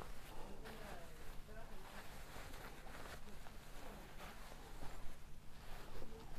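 Quiet rustling and handling of knit fabric as layers are pushed together and arranged by hand, with a few soft clicks.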